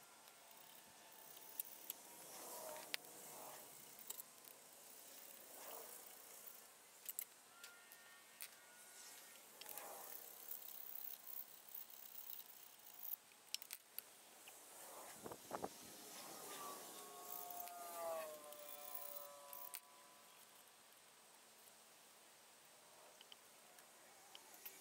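Near silence with faint scattered clicks and short squeaky chirps. These are the sounds of scraping and wiping an engine's gasket surface, played back at high speed.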